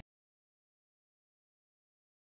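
Silence: the sound track is muted to nothing, with no room tone.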